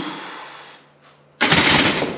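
A weightlifter's forceful breaths while pressing a heavy bench press: a loud exhale right at the start that fades over about half a second, then a second, louder blast of breath about a second and a half in.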